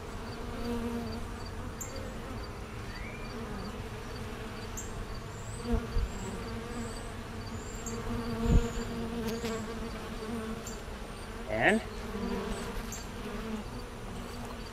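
Honeybees buzzing around an open hive: a steady, wavering hum that swells as bees fly close. A few dull thumps come a little past the middle.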